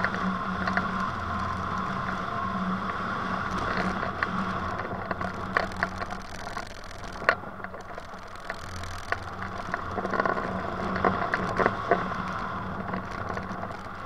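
Steady rush of airflow over a hang glider in flight, with a low steady hum and irregular light ticks and rattles through it.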